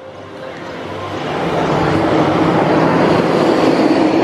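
Loud rushing mechanical noise with a low hum under it, building over about two seconds and then holding steady.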